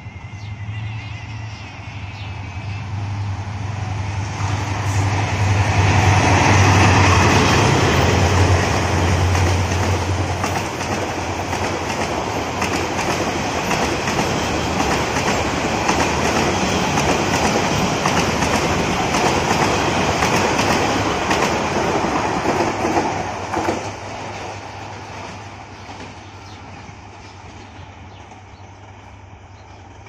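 A Bangladesh Railway Class 2900 meter-gauge diesel locomotive and its passenger coaches pass by at speed. The engine's low, steady drone builds and is loudest about six to eight seconds in. The wheels of the coaches then keep up a loud rolling rattle on the track until the sound fades over the last several seconds as the train moves away.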